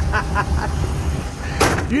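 Men's voices and a laugh over a steady low rumble, with a short sharp burst of noise just before the laugh.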